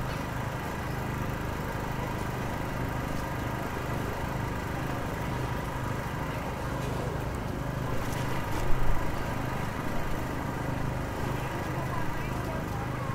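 Steady drone of road-works machinery engines running in a city street. About nine seconds in, a short burst of loud metallic knocks and clatter breaks over it.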